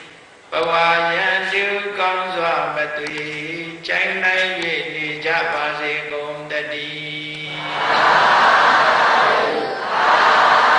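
A Buddhist monk's voice chanting in long, steady recitation tones through a microphone. Near the end a crowd of many voices answers together, loud.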